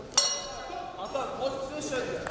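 Boxing ring bell struck once just after the start, ringing and fading away, signalling the end of the round. Voices follow from about a second in.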